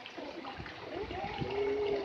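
Swimming-pool ambience: a steady wash of moving water with faint distant voices, one drawn-out call near the end.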